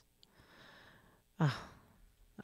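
A soft sigh-like breath, faint and unpitched, about half a second in, followed by a short hesitant "uh".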